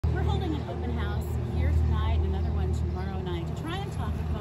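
A woman speaking, over a steady low vehicle rumble.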